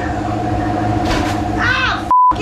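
Indistinct voices over a steady, low mechanical hum, with a louder voice near the end.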